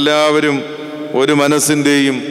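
A man's voice through a microphone in two drawn-out phrases, held on fairly level pitches like a chant, with a short dip between them around the middle.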